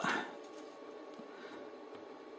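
Steady low room hiss with a faint electrical hum from the bench equipment, opening with a brief breathy rustle.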